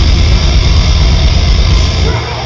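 Live deathcore band playing at full volume: down-tuned distorted guitars over rapid, heavy kick-drum hits, dense and bass-heavy as heard from within the crowd. The heavy low end drops away right at the end.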